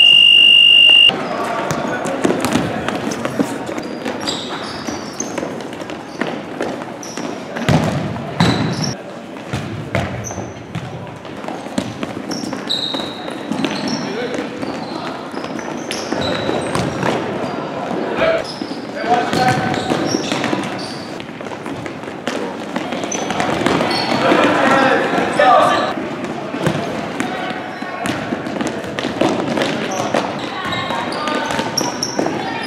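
A referee's whistle blows one steady blast of about a second at the start, then futsal play on a gym's hardwood floor: the ball being kicked and bouncing, with shouting from players and spectators.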